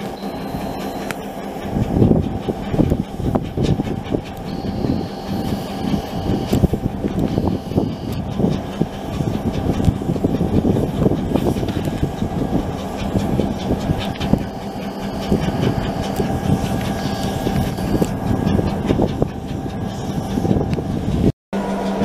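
EMD GP9 road-switcher locomotives' two-stroke diesel engines running under load with a steady hum and an irregular, rough chugging. The engine is chugging hard and running real rough, for no cause that is known.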